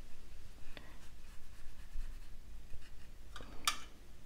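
Soft scratching of a paintbrush rubbing a dried watercolour dot on a paper dot card, a few faint strokes with the clearest one just before the end.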